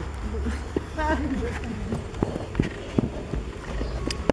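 Low, indistinct voices of people talking, over a steady low rumble of wind on the microphone, with a few sharp knocks in the second half.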